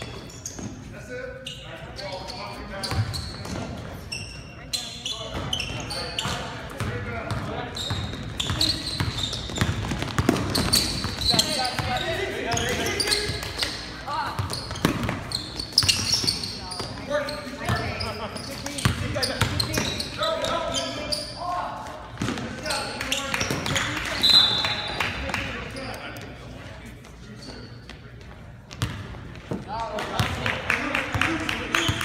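Basketball game on a hardwood gym court: the ball bouncing in sharp knocks, short high squeaks, and indistinct shouting from players and onlookers, echoing in the large hall.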